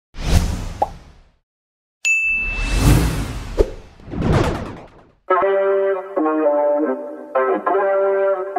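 Logo-animation sound effects: three whooshes with sharp pops and a short high ding among them. Music with sustained notes starts about five seconds in.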